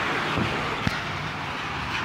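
Road traffic noise, a steady rush like a vehicle going by on the street, with one sharp click a little under a second in.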